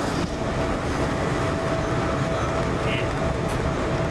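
Regional express train running, heard from inside the passenger carriage: a steady rumble and hiss with a thin constant tone over it.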